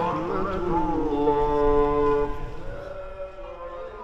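A man's voice leading a Muslim congregational prayer, chanted in Arabic through a microphone, sliding between notes and then holding long drawn-out tones that fade near the end.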